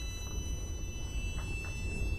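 A low steady rumble with a faint, steady high-pitched whine above it, and a couple of faint soft ticks about a second and a half in.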